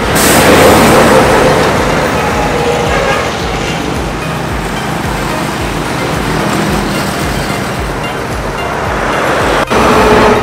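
Highway traffic: dump trucks and motorcycle tricycles passing, a loud, steady rush of engine and tyre noise.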